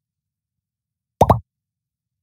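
Dead silence, broken once a little over a second in by a single short blip lasting about a quarter of a second.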